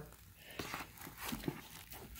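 Faint rustling and crackling of wet coconut coir being worked by hand in a plastic bucket, with a few small crackles.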